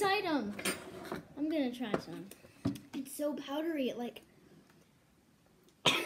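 Children's voices laughing and making wordless vocal sounds, with a couple of sharp clinks of a spoon against a tin. The sound drops to near silence for about a second and a half near the end.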